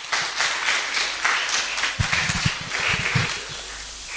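An audience applauding with hand claps. The applause dies away near the end, and a few low thumps come through about two to three seconds in.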